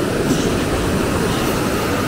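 Surf washing up onto a sandy beach: a steady rushing noise.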